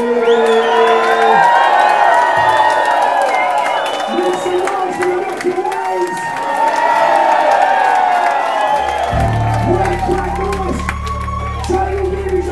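A rock band playing live in a club, with crowd shouts and whoops over the music. A heavy bass line comes in about nine seconds in.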